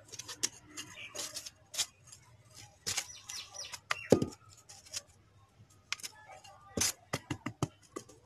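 A small hand trowel and fingers scraping and tapping in loose soil in a polystyrene planter box, making irregular scrapes and sharp clicks. The loudest knock comes about four seconds in.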